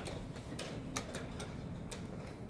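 Sharp, irregular clicks and knocks of blitz chess play: wooden pieces set down on boards and chess clock buttons pressed, about six in quick succession over the hall's low hum.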